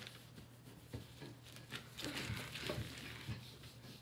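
Quiet rubbing and rustling of paper as a rubber-gloved hand rubs a food-colouring ice cube across it, with a few faint light taps.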